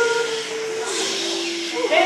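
Male a cappella voices holding a sustained chord under a loud breathy hiss. The hiss swells about halfway through and thins near the end.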